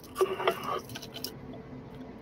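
A brief murmur of a voice about a quarter second in, then faint light clicks and clinks of metal costume jewelry being handled.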